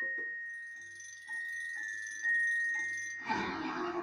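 A chime-like sound effect: a sustained high ringing tone that steps up slightly a few times, with a handful of soft short notes beneath it, fading and then swelling again.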